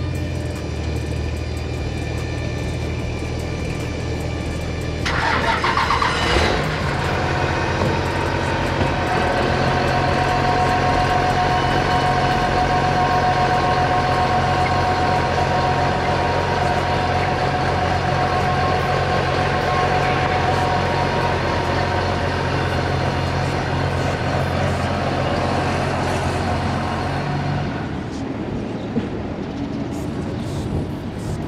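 Cummins race diesel engine of a drag truck running steadily at idle, with a brief surge about five to six seconds in, after which it runs a little louder; it fades out near the end.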